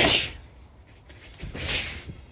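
Two short swishing noises, one at the start and one near the end, as a person swings an overhead hand strike (aikido shomen uchi) and steps through it.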